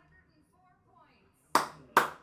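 One person clapping hands twice, two sharp claps near the end about half a second apart.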